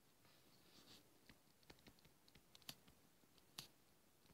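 Faint taps and light scratching of a stylus writing on a tablet, with a few sharper clicks, the loudest about three and a half seconds in.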